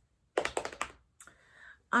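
A quick cluster of small clicks and taps, then a softer rustle: things being handled on a desk.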